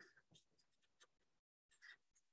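Faint felt-tip marker strokes on paper while writing: a few short, soft scratches, with a slightly stronger one near the end.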